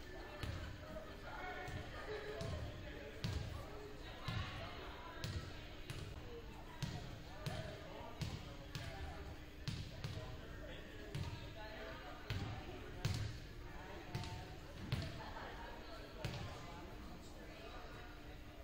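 A ball bouncing repeatedly on a hardwood gym floor, with irregular thuds about once a second and some louder than others, over indistinct chatter in the echoing gym.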